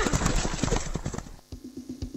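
Horse hoofbeats clip-clopping in a radio promo jingle, fading out over the first second or so. About one and a half seconds in, a steady electronic drum beat with a low tone starts, about four beats a second.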